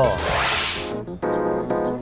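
A swoosh sound effect lasting about a second, followed by a held electronic keyboard chord.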